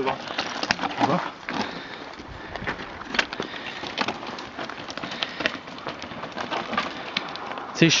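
Mountain bike descending a rocky trail: tyres grinding over loose stones, with frequent irregular knocks and rattles from the bike over the rough ground.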